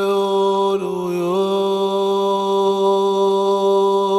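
Meditation music built on one low, held chanted note, like a sustained mantra. The pitch dips briefly about a second in and then returns.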